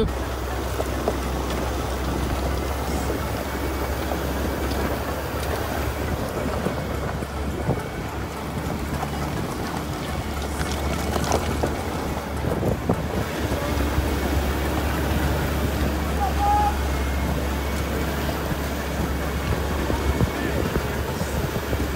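Toyota Fortuner turbo-diesel SUV driving along a rough gravel road, heard through the open side window: a steady low rumble of road and engine noise, with wind buffeting the microphone and a few brief knocks.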